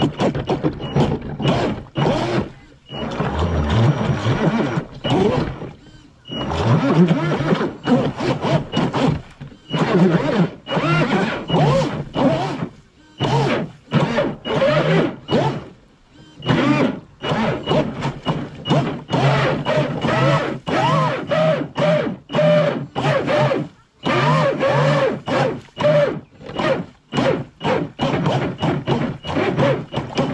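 Traxxas M41 RC boat's brushless motor and propeller revved in many short, irregular throttle bursts, each rising and falling in pitch, with brief pauses between them. The boat is stuck in mud and not moving.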